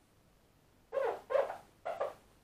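A dog barking three times in quick succession, starting about a second in.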